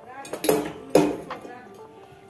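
Metal cookware clanking twice, about half a second apart, each knock sharp with a short metallic ring.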